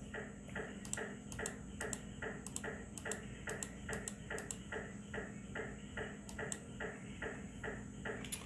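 MRI scanner running a sequence: rhythmic pings about four times a second, with sharper clicks among them, over a steady low hum.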